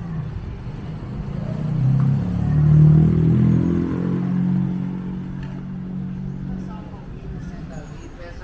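A motor vehicle's engine passing close by: it grows louder over the first few seconds, is loudest about three seconds in, then fades away over the next few seconds.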